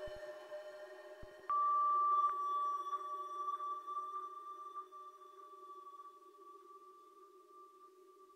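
Ambient electronic drone music: a low steady hum, joined about a second and a half in by a single high steady tone that starts suddenly and then slowly fades, with faint ticks alongside it.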